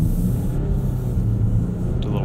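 Turbo-diesel V6 of a 2018 Land Rover Discovery heard from inside the cabin, pulling under load up a steep hill: a steady low engine drone that grows louder just before the climb.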